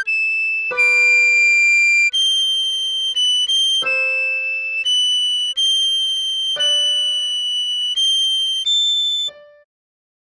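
Recorder melody played slowly in high, held notes, one after another, over a lower accompaniment note that sounds again every few seconds. The music stops at a rest a little over nine seconds in.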